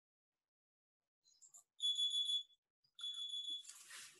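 Two high-pitched electronic beeps, each under a second long and about a second apart, the second running into a brief hiss.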